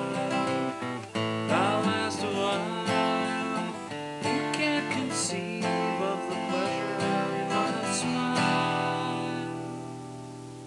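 Steel-string acoustic guitar strummed through the closing bars of the song. A final chord comes about eight and a half seconds in and is left to ring and fade.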